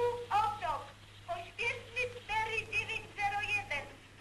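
Speech: a man's voice over a railway dispatch telephone line, thin and hard to make out, over a steady low hum.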